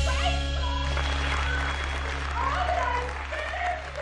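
Film soundtrack: the music ends on a held low bass note that slowly fades, under applause and cheering voices.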